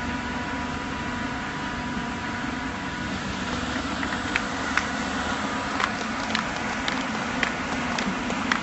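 Steady drone of construction-site machinery with a faint steady whine. From about halfway in, scattered sharp knocks start up, roughly one or two a second.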